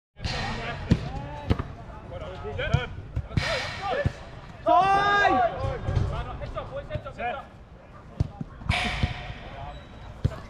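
A football being kicked and thudding on an artificial-grass pitch in a five-a-side game: sharp knocks scattered through, with players shouting across the pitch, one loud call about halfway.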